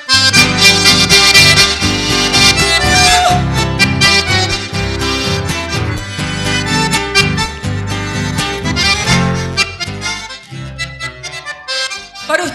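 Live band instrumental introduction led by an accordion over electric keyboard, with a steady bass line. It starts abruptly and eases off near the end.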